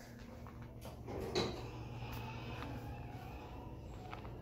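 Indoor store room tone: a steady low hum with a few faint knocks, and a brief louder clunk about a second and a half in.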